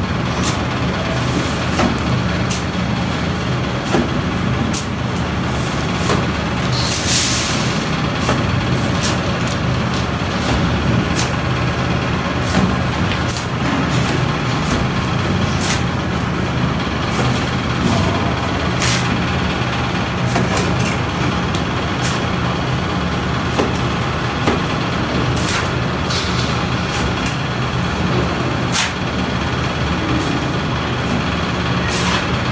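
Wet cement mortar slapping onto a brick wall as it is thrown on by hand, in sharp splats at irregular intervals, over a loud, steady engine-like drone of a machine running. A brief hissing scrape about seven seconds in.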